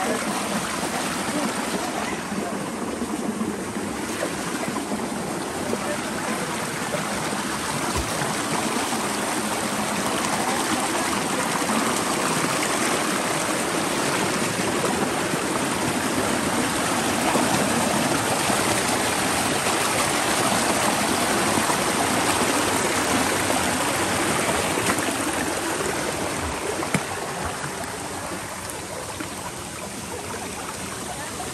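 Shallow rocky mountain stream running over stones: a steady rushing, splashing water noise, swelling slightly in the middle, with a couple of brief knocks.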